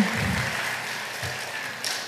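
Congregation applauding, the clapping slowly dying away.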